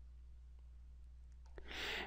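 Mostly quiet with a faint, steady low hum. Near the end comes a soft, rising in-breath drawn through the mouth just before speech resumes.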